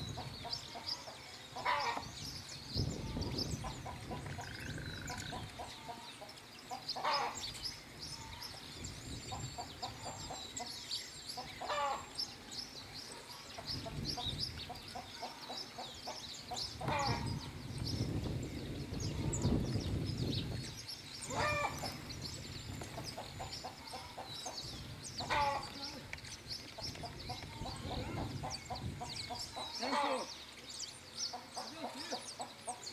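Chickens clucking, one call about every four to five seconds, over a steady scatter of high chirps from a flock of small ground-feeding finches. A low rumble comes and goes underneath.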